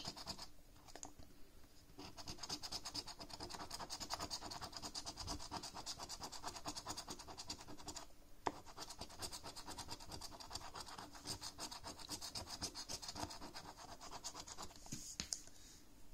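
A poker-chip-style scratcher coin scraping the coating off a paper lottery scratchcard in quick, rapid strokes. The scratching starts about two seconds in, breaks briefly about halfway with a sharp click, then carries on until shortly before the end.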